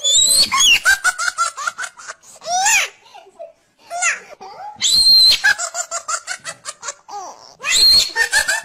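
Several peals of high-pitched laughter, each a run of quick giggling pulses, with short pauses between them.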